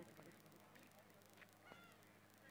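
Near silence: a faint steady low hum, with one faint short high chirp near the end.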